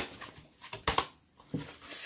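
Tarot cards being handled as a card is drawn from the deck: a few soft clicks and slides of card stock, quiet in between.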